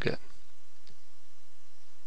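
A single faint click about a second in, over a steady low electrical hum, with the tail of a man's spoken word at the very start.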